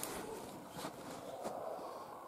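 Quiet outdoor background with a few faint, soft knocks.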